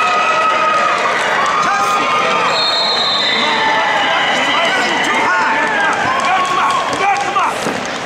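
Arena crowd shouting during a wrestling match: many overlapping voices yelling at once, loud and steady.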